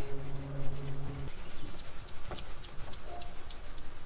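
Scattered light clicks and taps from hand work with a resin roller and tray on fiberglass, after a short steady hum in the first second or so.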